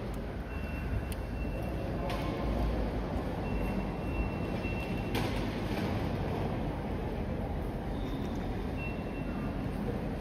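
Railway station concourse ambience: a steady wash of background noise with distant voices, a few sharp clicks and several short high beeps.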